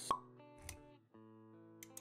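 Intro jingle of sustained synth-like notes, opened by a sharp pop sound effect, with a duller low thump a little over half a second later.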